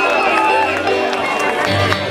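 Live band music played loud through a PA, heard from within the audience, with people's voices near the microphone over it.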